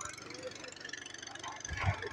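Quiet, steady outdoor background noise with no distinct event, in a short pause between spoken words.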